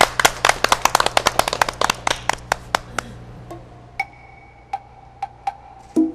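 A small group clapping hands: quick, irregular claps for about three seconds that then thin out to a few. Around four seconds in, a keyboard intro begins softly with a held note and a few sparse percussion taps.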